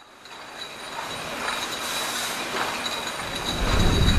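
Intro sound effect for an animated logo: a noisy rising whoosh with a steady high whine, swelling louder, with a deep rumble coming in near the end.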